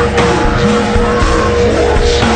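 Slowed-down, pitched-down heavy rock track in an instrumental stretch without vocals: loud distorted band sound with a held tone running underneath.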